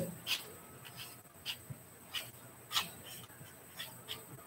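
A pen or marker writing: five or six short strokes, spaced irregularly, over faint room hiss.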